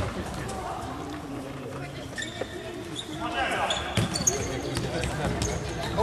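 Futsal game sounds in a large sports hall: the ball being kicked and bouncing on the hall floor in short knocks, with players' voices calling out faintly in the distance.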